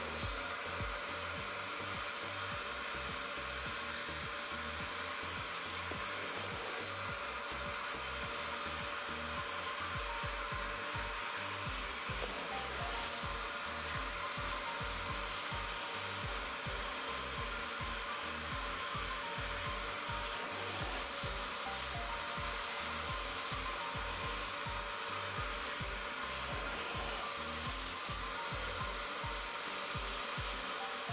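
A portable spot-cleaner carpet extractor (Bissell Spot Clean) running steadily with a high, even whine. Its clear extraction tool is pulled across wet carpet, sucking up dirty cleaning solution.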